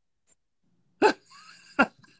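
About a second of near silence, then a man's brief laugh: two short, sharp vocal bursts with a faint, breathy sound between them.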